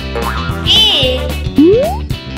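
Children's background music with cartoon sound effects: a short warbling high sound a little before the middle, then a quick rising boing-like glide near the end.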